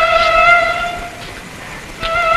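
Film background score: a single long, steady note on a wind instrument, held and then fading out just over a second in.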